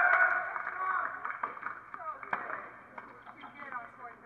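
Shouted voices on an outdoor tennis court fading away, then scattered faint calls and a few sharp knocks, the loudest about two seconds in.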